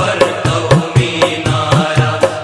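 Background music: a steady, fast drum beat, about four strokes a second with heavier low drum hits on every other stroke, under a sustained melody.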